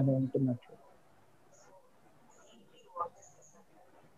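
A man's speech breaks off, then a quiet pause holds a few faint, short, high bird chirps and one brief faint sound about three seconds in.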